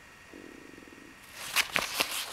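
A folding fabric solar panel being unfolded and handled. First comes a short low buzzing rasp, then rustling with a couple of sharp clicks near the end.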